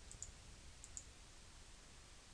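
Two faint computer mouse clicks about three-quarters of a second apart, each a pair of quick ticks, over near-silent room tone.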